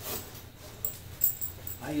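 Fabric rustling and metal buckle hardware clicking as a climbing harness seat is handled, with one sharper click about a second in.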